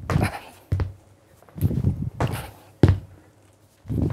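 Repeated thuds of sneakered feet landing on a wooden floor during kettlebell jump shrugs, each jump made holding a pair of kettlebells, with shoe scuffs between the landings. There are several sudden impacts across the few seconds.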